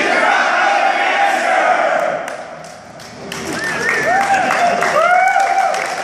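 A large group shouting together in one loud yell that fades after about two seconds, then separate whoops and cheers from several people, with scattered clapping near the end.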